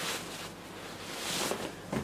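Soft rustling of a plastic mailer bag as a bundled fleece hoodie is pulled out of it, rising about a second in and dying away just before the end.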